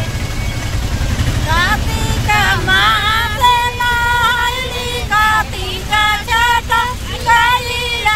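Women singing, the melody rising and falling with some held notes, over the steady low engine and road rumble of a moving tempo (shared auto-rickshaw).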